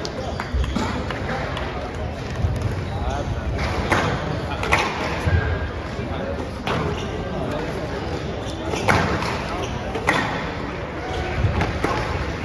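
Squash ball being struck by rackets and hitting the court walls in a rally, a sharp hit every second or two, over murmuring voices from the spectators.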